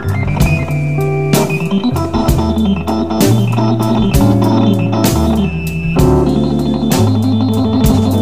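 Hammond B3 organ playing a blues solo with sustained chords and runs over a low, moving bass line, with sharp drum hits about once a second.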